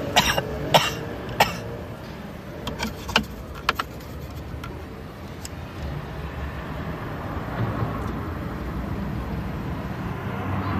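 Steady low rumble of a car heard from inside the cabin, with a run of short, sharp sounds in the first few seconds.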